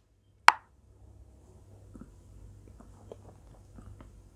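A single short, sharp pop about half a second in, then faint room tone with a few soft little clicks.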